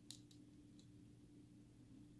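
Near silence: faint room hum with a few soft clicks in the first second.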